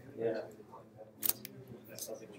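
A quick pair of sharp clicks a little over a second in, with fainter clicks after them, over a faint murmured voice.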